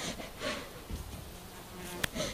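Flying insects buzzing close to the microphone, with soft breathing sounds.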